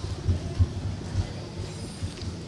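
Handling noise from lectern microphones being adjusted on their stand by hand: a few dull thumps and low rumbles, the clearest about a third and two-thirds of a second in.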